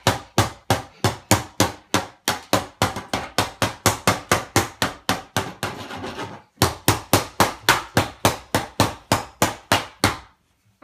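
Child's toy hammer banging on a wooden tabletop in a rapid, steady run of knocks, about four a second, with a brief scraping pause about six seconds in.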